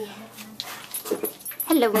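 A Lhasa Apso making a few quiet, short dog noises close to the microphone. Near the end a woman laughs and says "hello".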